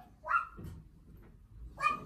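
A dog giving two short barks, one about a third of a second in and one near the end.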